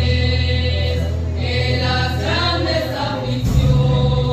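A vocal group singing a Christian hymn in Spanish over sustained low bass notes, which move to a new note near the end.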